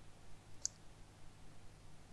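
Quiet room tone with a single short, sharp click about two-thirds of a second in.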